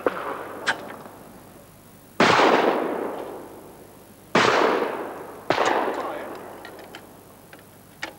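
Three shotgun shots, about two seconds and then one second apart, each followed by a long rolling echo that dies away.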